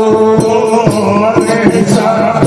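Live Rajasthani folk-theatre music: a long held note over a quick, steady drum beat with jingling percussion.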